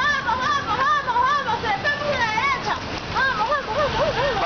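A moving bicycle squeaking rhythmically, a squeal that swoops up and down about three times a second, in step with the turning front wheel, over the hiss of tyres on asphalt and wind.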